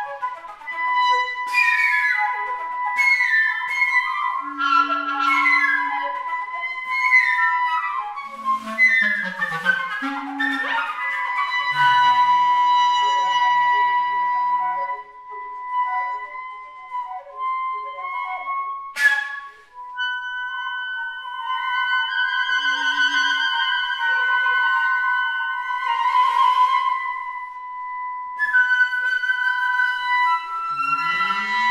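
Flute and clarinet duo playing contemporary chamber music: a long held high note runs beneath flurries of short notes with sharp, noisy attacks and a few low clarinet notes. About two-thirds of the way through comes a sudden rising swoop, then sustained held notes that swell.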